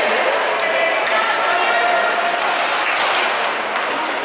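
Indoor ice arena ambience: a steady, echoing babble of overlapping spectators' and children's voices, with no single voice standing out.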